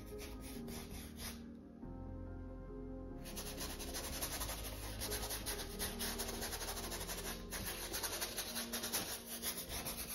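Paintbrush scrubbing and tapping acrylic paint onto a stretched canvas, a scratchy rubbing in quick short strokes that grows louder from about three seconds in. Soft background music plays underneath.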